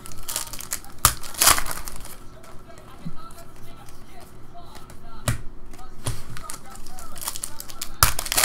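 Trading cards being handled and flicked through by hand, with a foil pack wrapper crinkling. A few sharp card clicks and a short crinkle are followed near the end by a quick run of crackles.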